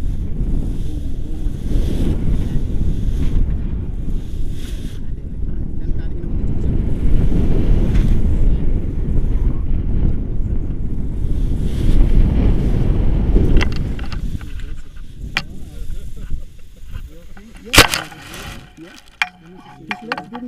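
Wind buffeting the camera's microphone as a tandem paraglider flies low toward landing, a loud low rumble that drops away abruptly after about 14 seconds once they are down. Several short knocks follow, with one loud thump shortly before the end.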